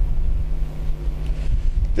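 A low rumble, like wind noise on the microphone, over a steady low hum. Nothing else stands out.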